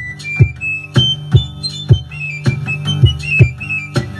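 Basque txirula, a high three-hole pipe, playing a quick, lively melody, accompanied by the player's other hand beating a ttun ttun string drum with a stick. The struck strings give a low, droning pulse about twice a second under the tune.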